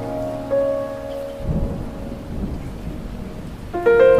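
Piano music breaks off about a second and a half in, giving way to a low rumbling rush of heavy rain and torrential floodwater; the piano comes back just before the end.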